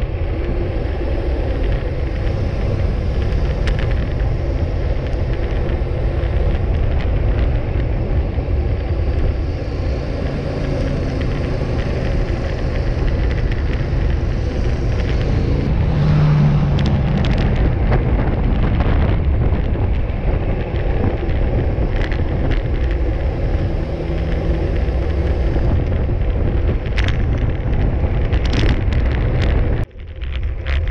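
Wind buffeting the microphone of a handlebar-mounted camera on a road bike moving at speed: a loud, steady low rumble, with a few sharp ticks near the end.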